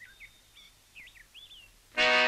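A bird chirping a few short notes that slide up and down, faint over a low hiss.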